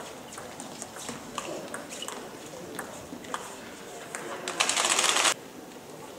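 Sports-hall background of voices with scattered sharp clicks, table tennis balls being bounced and hit. A loud rush of noise, under a second long, comes about four and a half seconds in.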